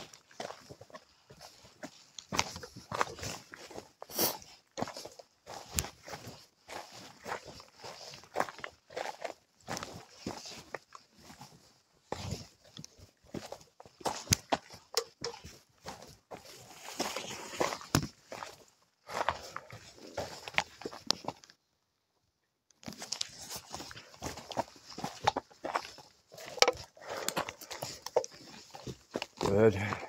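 A hiker's footsteps on a mountain trail, an irregular run of steps with rustling from the handheld camera. The sound cuts out completely for about a second a little past the middle.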